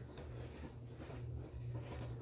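Quiet room tone in a small room: a faint, steady low hum under light background noise.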